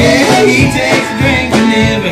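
Live band playing an upbeat country tune: a man singing over a hollow-body electric guitar, with a steady beat.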